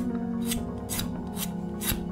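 A sharp metal point scratched across a painted metal surface in short scraping strokes, about two a second, over background music.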